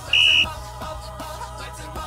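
A referee's whistle blown once: a short, steady high-pitched blast of about a third of a second near the start, over background pop music with singing.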